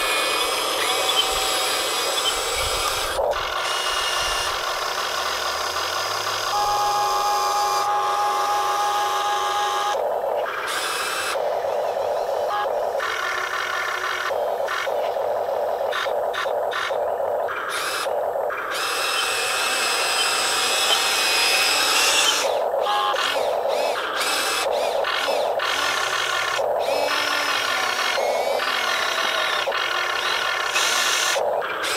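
Radio-controlled CAT 336D scale excavator's small electric motors and gearboxes whining as it tracks, slews and works its arm, starting and stopping over and over.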